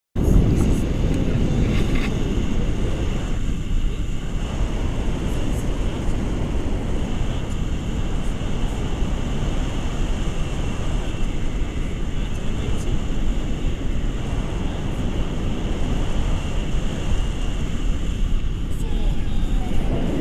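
Wind rushing over an action camera's microphone in paragliding flight: a loud, steady rumble.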